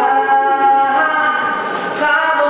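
A young man singing solo into a handheld microphone, holding long notes that move to a new pitch twice.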